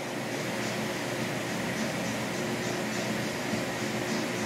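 Steady indoor background hum and hiss, like an air conditioner or fan running, with a few faint soft rustles.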